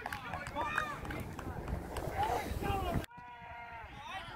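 Players' shouts and calls across a football pitch, mixed with outdoor background noise. The sound cuts off abruptly about three seconds in and gives way to a quieter stretch with a clearer voice.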